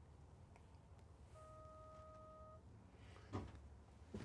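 Faint electronic warning beep, one steady tone lasting just over a second: the RV's lights-on reminder, sounding because the lights are on while the engine and power source are off. A soft click follows near the end.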